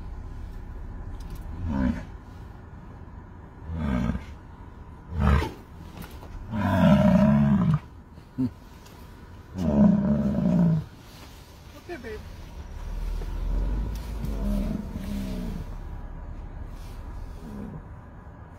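A series of loud roaring vocal calls with pauses between them, the two longest and loudest near the middle and fainter ones toward the end.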